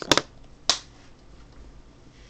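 Sharp clicks of small hard objects being handled or set down as items come out of a school bag: a quick double click, then a single click about half a second later.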